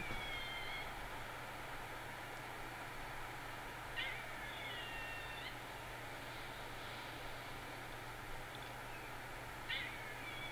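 Eastern gray squirrel giving its mournful cry three times, each a drawn-out, slightly falling whine of about a second and a half, some four to five seconds apart, faint over a steady background hiss. It is a cry heard from squirrels trapped with an owl or hawk nearby.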